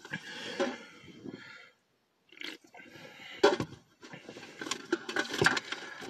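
A person taking a drink: swallowing and liquid sounds, with scattered clicks of handling. There is a short silent gap about two seconds in.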